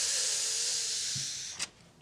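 A steady hiss lasting about a second and a half, slowly fading out, followed by a single short click.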